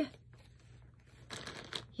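Near silence, then a few faint rustles and light clicks in the second half, like small objects being handled.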